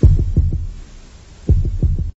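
Heartbeat sound effect in a soundtrack: two loud, low double thumps about a second and a half apart.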